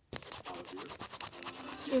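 Scratching and rubbing noise of a phone being handled close to its microphone, in quick rough strokes that start suddenly just after the opening, with a voice underneath.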